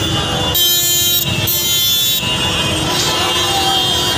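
A vehicle horn sounds two blasts of under a second each, about half a second in, over continuous street traffic and crowd noise.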